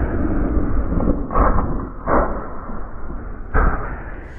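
Muffled, low street and traffic rumble heard from a motorcycle, with three short loud bursts about a second apart as a sports car spins across the intersection.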